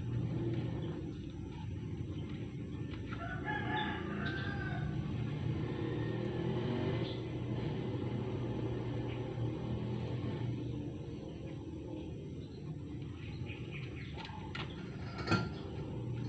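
A rooster crowing about three seconds in, over a steady low hum. A single sharp click comes near the end.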